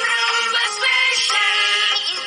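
A song: singing over music.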